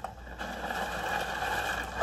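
A pot of salted water at a hard rolling boil, bubbling and crackling steadily.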